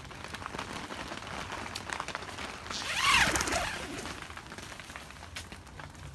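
Rustling and brushing of a wet nylon tent door flap as it is handled and pushed aside, with one louder swish about halfway through.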